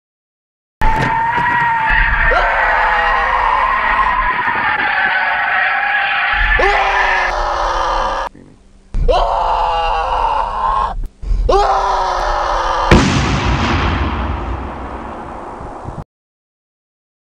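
People screaming and yelling inside a car, in several short cut segments. About thirteen seconds in a sudden loud burst of noise cuts in and fades away.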